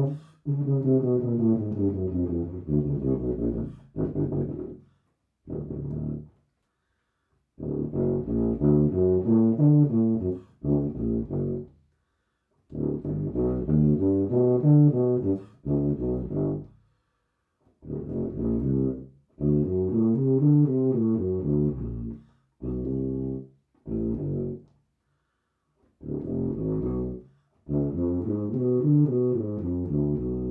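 Tuba playing F scale runs an octave below written, each run climbing and falling in pitch. The runs come in about a dozen separate phrases, with short silent gaps between them.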